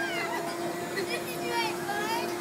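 Faint high-pitched squeals from riders on a drop-tower ride, twice, each falling in pitch, over a steady low hum.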